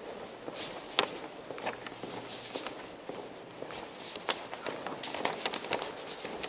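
Footsteps of a person walking down a hallway with a hard, polished floor: a string of short, sharp steps at a walking pace.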